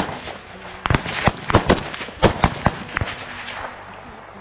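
Small-arms gunfire in a firefight: about ten irregular single shots of varying loudness, coming thickest in the first three seconds and thinning out near the end.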